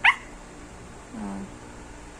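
A small dog gives one short, sharp, high yip that drops quickly in pitch, during play-biting, followed about a second later by a brief lower sound.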